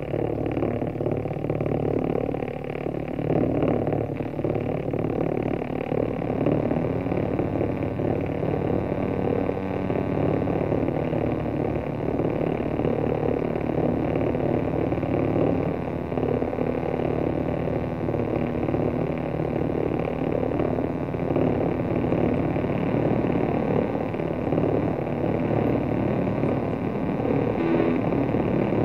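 Electric guitar played through effects and distortion, a dense steady wash of sound with slowly wavering tones partway through.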